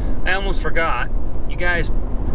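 A man speaking in short bursts inside the cab of a moving pickup truck, over a steady low drone of road and engine noise.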